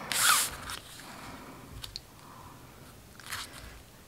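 Cardstock rustling and sliding as a glued paper panel is set onto a folded card base and pressed flat by hand: a short swish at the start, faint taps, and another brief rustle about three seconds in.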